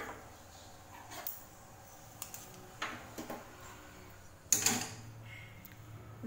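Flat wooden spatula stirring dry roasted moong dal powder in a nonstick pan: a few soft scrapes and taps, then one louder knock near the end.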